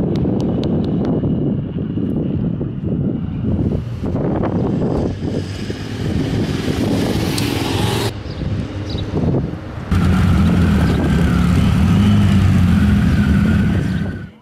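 Motorcycle engines running, a low rumble that changes abruptly twice. In the last few seconds a group of cruiser motorcycles runs steadily with an even low note.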